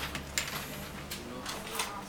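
A few light, sharp clicks and taps of small plastic phone parts being handled: a BlackBerry 9700's battery being taken out and its keypad being picked up.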